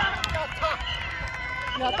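Several people cheering and shouting after a scored penalty kick, several voices at once with some high cries, loudest at the start and easing off. Quick footsteps on artificial turf as the kicker runs off celebrating.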